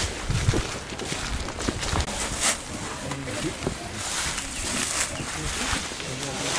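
Footsteps of a group of people walking, irregular steps and scuffs, with faint voices chatting in the background.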